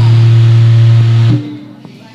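A loud, steady low sustained note from the warok dance's live musical accompaniment over a sound system, cut off abruptly about a second and a half in, after which it drops to a much quieter background.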